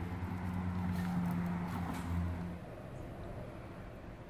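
A low, steady engine hum that fades away about two and a half seconds in.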